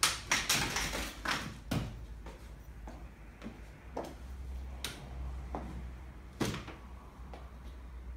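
Bugaboo Cameleon3 stroller chassis being folded and set down: a series of clicks, knocks and clatters from its frame joints and wheels. The loudest come at the start and about six and a half seconds in.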